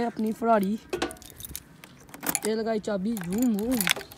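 A bunch of motorcycle keys jangling and clinking in a hand, in short bursts of sharp metallic clicks, with a person's voice over it.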